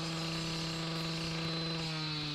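Gas-powered cut-off saw (two-stroke) running steadily at speed as its blade cuts through a concrete block, its pitch sinking slowly.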